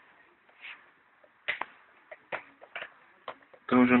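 Push-buttons on a home telephone keypad being pressed, giving about half a dozen sharp, separate clicks. Cleaned of grease, the buttons no longer stick and actuate normally.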